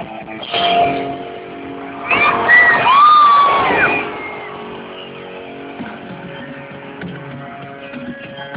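Electric guitars of a thrash metal band playing live, picked up by a phone's microphone in the audience, muffled and thin. Held notes ring throughout, with a louder passage of high gliding squeals from about two to four seconds in.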